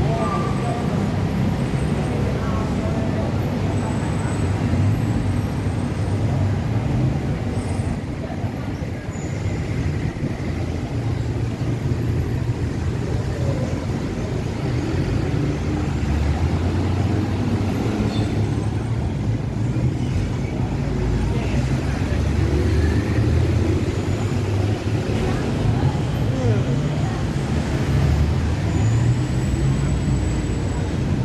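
Busy city street ambience: a steady low rumble of traffic with indistinct voices of passers-by.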